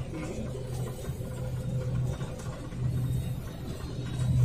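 New Holland TX66 combine harvester running steadily while cutting and threshing wheat, heard from inside the cab as a steady low drone.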